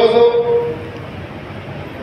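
A man's voice through a public-address system holding one drawn-out syllable for under a second. It is followed by a pause filled with a steady background hiss from the open-air venue.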